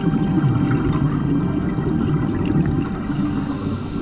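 Scuba diver's exhaled bubbles rumbling and gurgling underwater for about three seconds, easing off near the end, over steady background music.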